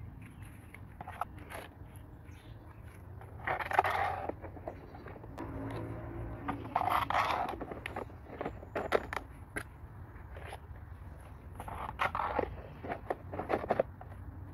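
Plastic planter pots scraping and knocking against each other as they are handled and stacked: a few short bursts of scraping with scattered clicks between them.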